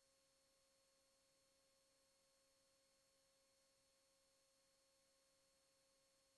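Near silence: the sound feed is all but dead, leaving only a very faint, steady electronic tone.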